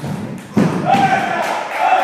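Table tennis play in a large echoing hall: a dull thud about half a second in, after another just before, then a voice.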